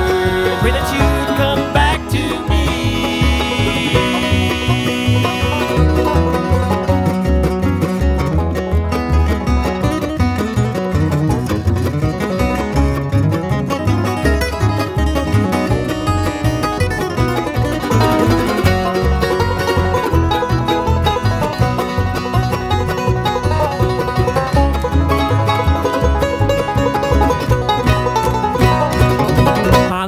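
Bluegrass band playing an instrumental break with no singing: banjo to the fore over guitar and a steady bass pulse.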